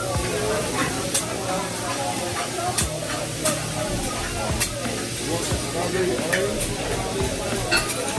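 Food sizzling on a steel teppanyaki griddle, a steady hiss, with sharp metallic clicks of a chef's spatula tapping and scraping the steel about once a second.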